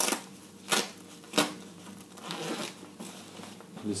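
A nylon shell jacket being handled and opened by gloved hands: three sharp clicks in the first second and a half, then fabric rustling.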